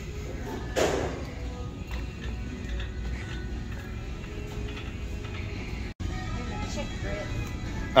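Faint background music over the steady hum of a large store, with a brief noise about a second in and a momentary dropout near six seconds.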